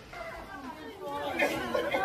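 Voices of several people talking over one another, growing louder a little past halfway.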